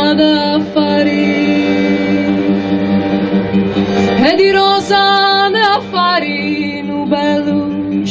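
Live folk song: a woman sings over an acoustic guitar while a button accordion holds steady sustained notes underneath. About four seconds in the melody slides up into a long held note.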